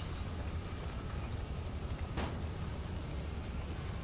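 Steady low rumble of outdoor background noise, with a faint click about two seconds in.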